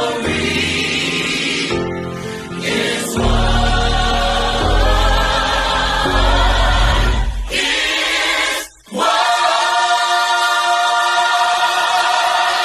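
A choir singing a gospel-style song with a backing band. Deep bass notes come in about three seconds in. After a brief break just before the ninth second, the voices hold a long sustained chord.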